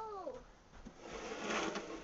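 A young child's high, wordless vocal sound gliding up and then down, ending about half a second in; then about a second in, a short, loud scrape of snow.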